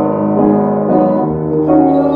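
Upright piano playing a run of chords, a new chord struck about every half second.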